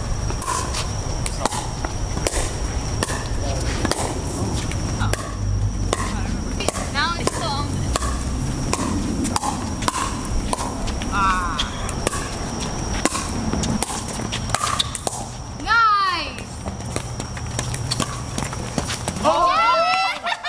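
Pickleball rally: sharp, irregular pocks of paddles striking the plastic ball and the ball bouncing on the hard court, sometimes several a second.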